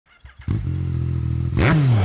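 Motorcycle engine idling steadily, then revved once near the end, the pitch rising sharply and falling back.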